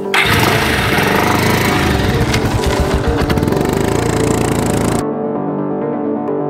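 Motorcycle engine revving hard as the bike pulls away, loud and rough over background music; it cuts off suddenly about five seconds in, leaving only the music.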